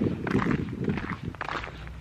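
Footsteps of a person walking at a steady pace, along with rustling from the handheld camera.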